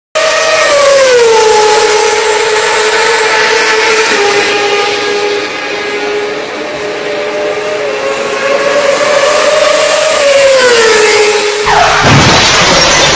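High-revving motorcycle engine running, its pitch dropping about a second in, holding fairly steady, then rising and falling again near the end, where a sudden loud noise cuts in.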